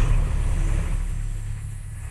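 A deep, loud rumble that slowly fades away, the tail of a sudden heavy hit.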